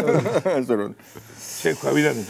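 A man talking, broken about a second in by a short hissing sound.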